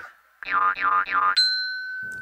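An edited sound-effect sting: a few bouncing pitched notes, then a high, steady ding that starts a little more than a second in and rings on.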